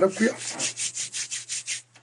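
A quick run of soft, scratchy rubbing strokes, about seven a second, that stops shortly before speech resumes.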